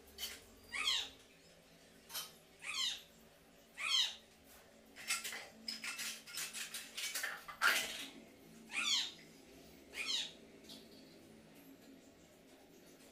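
Five short high calls, each gliding quickly downward in pitch, like an animal or bird call. Between the third and fourth call comes a few seconds of scratchy clicking and rustling.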